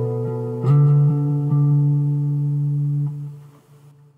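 Guitar music: a ringing chord is struck about two-thirds of a second in, holds, then fades away near the end.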